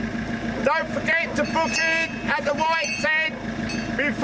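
A voice speaking outdoors over the steady low rumble of idling car engines.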